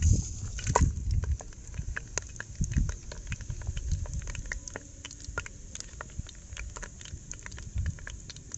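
Whole spices (cinnamon, star anise, bay leaf and seeds) sizzling and crackling in hot oil in a large pot, with many small pops throughout. A louder hiss comes in the first second as the spices hit the oil.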